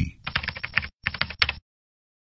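Computer keyboard typing: a quick run of keystrokes lasting about a second and a half, then it stops.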